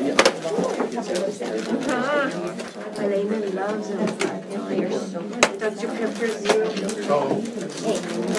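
Several people chatting at once in a meeting room, with a few sharp clicks and knocks from the tables and chairs. A short high warbling sound comes about two seconds in.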